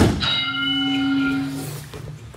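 A body thuds onto a grappling mat during a sweep, the loudest sound, followed by a steady humming tone with overtones that holds for about a second and a half and fades.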